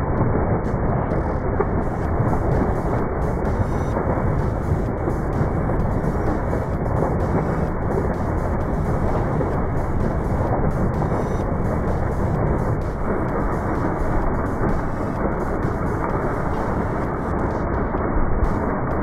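Heavy stream of water from a water truck's hose gushing into a swimming pool: a steady, loud rushing and splashing.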